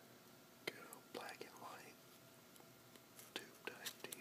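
Close-miked handling of a catalog's thin paper pages: a sharp tick about half a second in, a brief rubbing rustle around a second and a half, and a few more ticks near the end.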